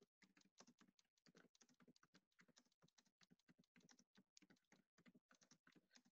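Very faint typing on a computer keyboard: a quick, irregular run of key clicks, several a second.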